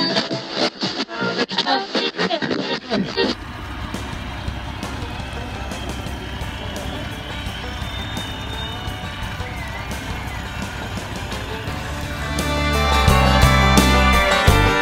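A voice and laughter for about the first three seconds, then a steady noise of a boat under way on choppy water: motor and wind. Near the end, music with a heavy bass beat comes in.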